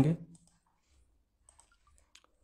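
A couple of faint, short clicks, a computer mouse or pen tablet advancing the presentation to the next slide, in an otherwise quiet room after a man's word trails off.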